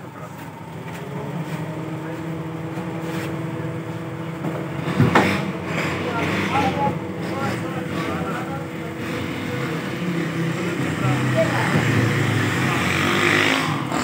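Steady mechanical hum with a faint whine, and a sharp click about five seconds in.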